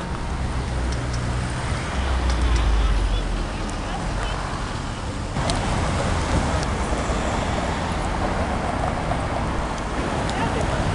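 City street traffic with a car engine's low rumble, loudest about two to three seconds in as it pulls through the junction. About five seconds in the sound changes abruptly to a denser mix of passing traffic.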